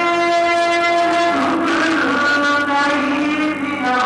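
A man's voice over a microphone and loudspeakers, chanting a devotional recitation in long held notes; the pitch steps down about a third of the way in. A low steady hum runs underneath.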